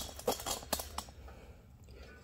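A few faint, short clicks of handling in the first second, then very quiet room tone.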